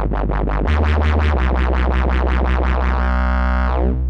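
Eurorack modular synthesizer patch run through the SSSR Labs Alisa wave shaper, a wavefolder modelled on the Soviet Alisa 1377 synthesizer. A fast repeating plucked sequence, about seven notes a second, plays over a low bass note that steps in pitch twice. About three seconds in, the notes give way to one held bright tone whose high end then fades away.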